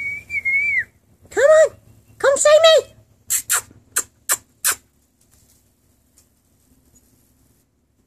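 A person whistles to call a dog: one note that glides up and then holds for about a second. Two short, high called-out sounds follow, then five sharp clicks in quick succession.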